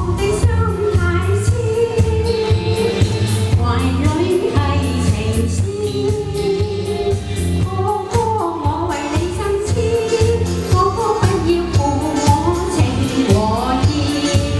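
A woman singing a Chinese pop song into a handheld microphone over backing music with a steady beat.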